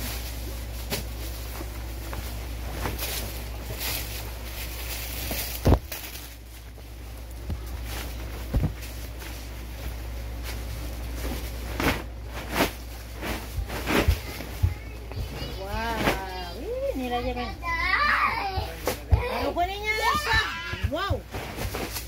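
Stiff, glossy bazin fabric rustling and crackling as it is handled close to the phone, with scattered sharp clicks and a steady low hum. High voices, like a child's, are heard in the last several seconds.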